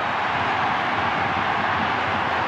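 Large football stadium crowd cheering steadily.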